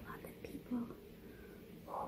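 A woman whispering softly in short, broken fragments between phrases, a little louder near the end.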